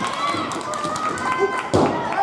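Voices shouting and calling over one another around a wrestling ring, with one heavy thud on the ring canvas near the end as the pin cover goes on.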